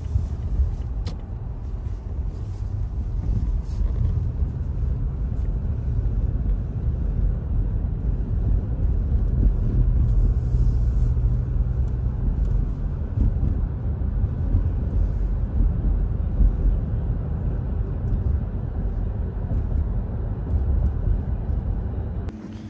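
Steady low road and engine rumble of a car being driven, heard from inside the cabin.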